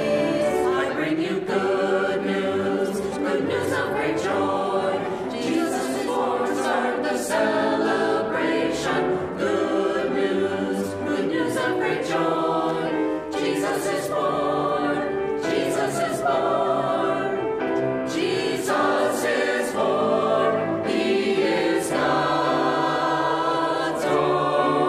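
Mixed choir of men's and women's voices singing a Christmas anthem in English, with lyrics such as "Good news, good news of great joy! Jesus is born!" and "Jesus is born, He is God's own Son!"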